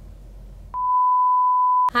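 A single steady high-pitched beep tone lasting a little over a second, starting partway in and cutting off abruptly, with faint room noise before it.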